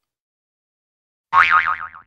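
Silence, then about 1.3 seconds in a short cartoon-style boing sound effect whose pitch wobbles up and down.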